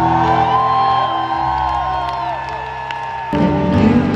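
Live band music in an arena heard from within the audience, with the crowd whooping over sustained tones. About three seconds in, the full band comes back in, louder and with more bass.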